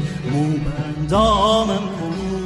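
A Persian song: a singer holds a long, wavering note about a second in, over steady instrumental accompaniment.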